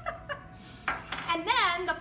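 Small decorative topper pieces knocking and clinking on a table as they are handled, with a sharper knock about a second in. A woman's voice follows in the second half.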